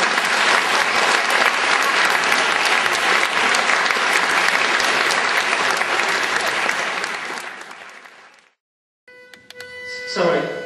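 Audience applauding at the end of an a cappella barbershop song, the clapping dying away about eight seconds in.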